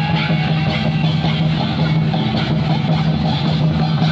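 Santhali traditional dance music, played loud, with hand drums beating a steady rhythm under some sustained pitched sound.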